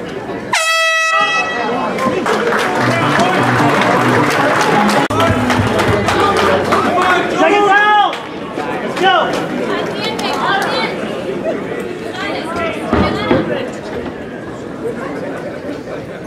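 An air horn sounds once, briefly, about half a second in, marking the end of the round. It is followed by a crowd shouting and cheering.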